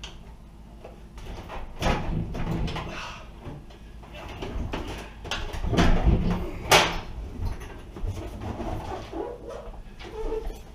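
Old over-the-range microwave being lifted off its wall bracket and carried away: irregular scraping and knocking of its metal case against the bracket and cabinet, with one sharp knock about two-thirds of the way through.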